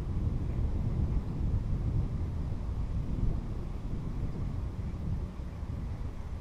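Wind buffeting the microphone outdoors: a steady low rumble that eases a little near the end.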